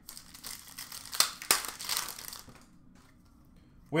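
Foil wrapper of a trading-card pack crinkling and tearing as the pack is opened by hand, with two sharp crackles a little over a second in.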